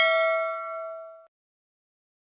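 Notification-bell 'ding' sound effect of a subscribe animation, a struck bell with several ringing pitches fading away and then cut off abruptly about a second and a quarter in.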